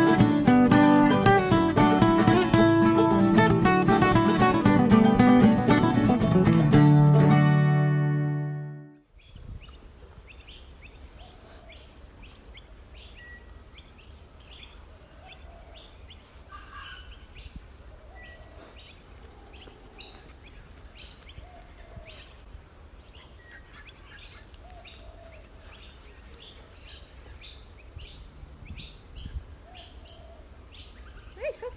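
Strummed acoustic guitar background music that fades out about eight seconds in. It gives way to quiet outdoor ambience with birds chirping on and off.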